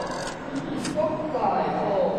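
Rustling and scattered clicks in the first second as a crowd kneels and bows, then a voice chanting in long, drawn-out tones.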